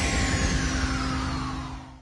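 Tail of a logo sting sound effect: a noisy whoosh fading out, with a thin tone gliding steadily downward through it, dying away to silence at the end.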